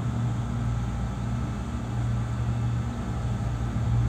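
A steady low hum, with no other sound standing out.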